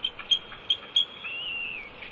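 Bald eagles calling while mating: a run of short, high chirps about three a second, then a longer wavering whistled note in the second half.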